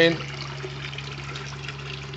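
A thin stream of water pouring from a hose into a filled aquarium, splashing and trickling steadily on the surface, over a steady low hum.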